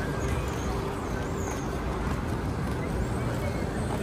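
Steady outdoor street ambience: a low rumble of road traffic with faint voices of passersby.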